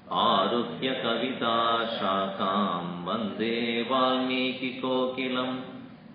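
A man chanting Sanskrit verses in a melodic, sing-song recitation, with short breath pauses right at the start and just before the end.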